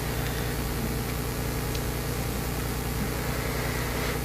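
A steady low hum with a faint hiss from the room's background noise, unchanging throughout.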